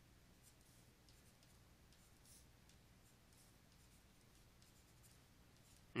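Near silence: faint, scattered scratches of a stylus on a drawing tablet as letters are written, over a low steady hum.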